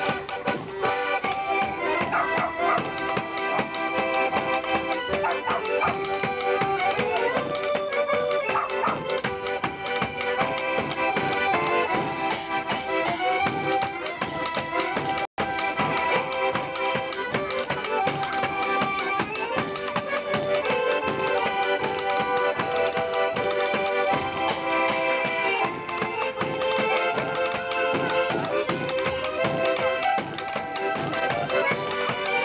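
Polish folk band playing a lively traditional tune: accordion carrying the melody over double bass and a dense, steady percussion beat. The sound cuts out for a split second about halfway through.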